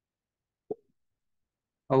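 Dead silence broken once by a single short pop about two-thirds of a second in; a man's voice begins just before the end.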